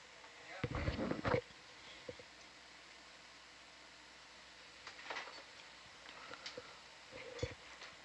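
Faint, brief snatches of voices over a steady low hiss, once about a second in and again about five seconds in.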